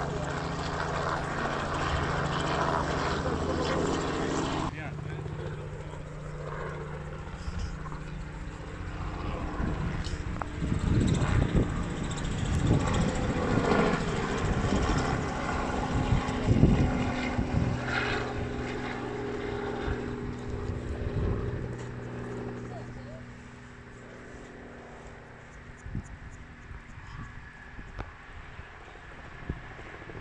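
Radio-controlled model helicopter in flight: a steady motor and rotor drone. It is loudest through the middle, with gusty low rumbling, and fainter near the end.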